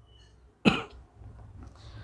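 A man's single short cough, about two-thirds of a second into an otherwise quiet pause.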